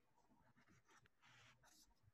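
Near silence, broken by a few faint, brief scratching noises in the second half.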